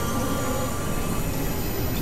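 Experimental industrial noise music: a dense, steady noise drone, heaviest in the low end, with a few thin high held tones that stop a little past a second in.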